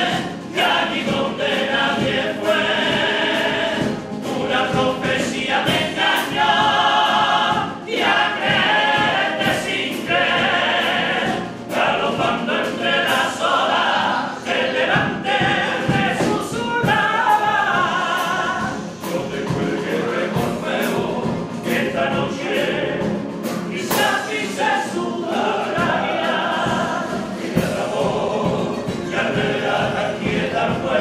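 A Cádiz carnival comparsa chorus singing in full voice, many men's voices together in held phrases, accompanied by strummed Spanish guitars.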